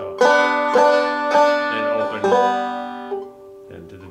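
Five-string resonator banjo played clawhammer style in open G tuning: a short phrase of plucked notes with a harmony note added on a neighbouring string. The notes ring and die away from about three seconds in.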